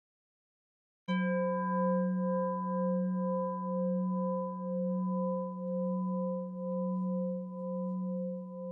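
A singing bowl struck once about a second in, then ringing on with several steady overtones, fading slowly with a regular wobble in its tone.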